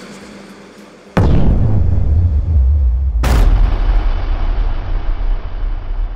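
Cinematic logo-sting sound effect: after a faint fading tail, a sudden deep boom about a second in, a second sharper hit near the middle, then a low rumble that slowly dies away.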